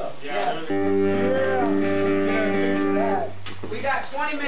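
An amplified guitar holding one low sustained note for about three seconds, starting suddenly just under a second in and cut off near the end, with voices talking over it.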